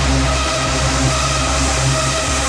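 Electronic dance music from a live rave DJ set: held synth tones over a heavy bass line.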